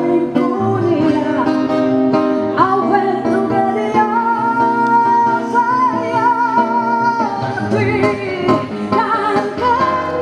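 A milonga played on acoustic guitar with a woman singing; in the middle she holds one long note with vibrato.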